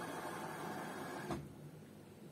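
LG Intellowasher 5 kg front-loading washing machine mid-cycle: a burst of mechanical whirring from the drum turning, lasting about a second and a half and ending with a clunk a little past a second in, over a low hum.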